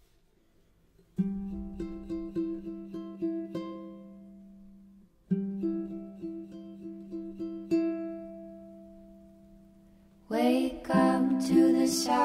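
Ukulele intro: single picked notes ringing out in two short phrases, each fading before the next begins. About ten seconds in, a fuller and louder part comes in.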